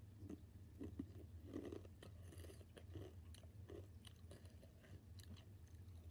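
Faint, irregular crunching and chewing of Takis rolled tortilla chips, over a steady low hum.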